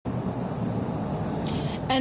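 Steady low outdoor background rumble, like road traffic, with no distinct events, before a woman's voice starts near the end.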